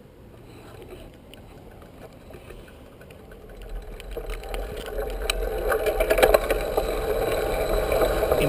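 Wind rushing over a bicycle-mounted camera and tyre rumble on asphalt, both growing steadily louder as a 1968 Schwinn Stingray gathers speed downhill from a standstill. Sharp clicks and rattles from the bike come in about four seconds in.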